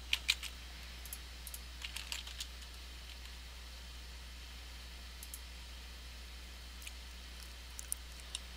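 Computer keyboard keystrokes and mouse clicks: a quick run of sharp clicks over the first two and a half seconds, then a few single clicks further apart, over a steady low hum.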